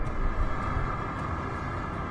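Numatic George vacuum cleaner running steadily, drawing air through its chrome wand over a pile of pet fur, with a short louder bump at the very start.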